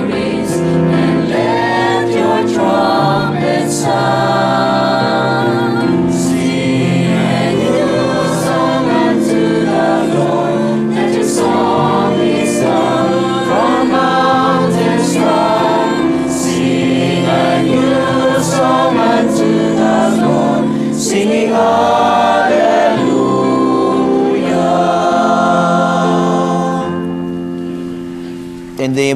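Church choir singing the entrance hymn of the Mass, accompanied by an electronic keyboard with a steady beat; the music fades out near the end.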